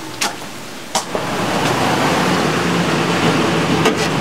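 Two short knocks, then about a second in a steady rushing noise with a low hum sets in: a parked SUV running at idle.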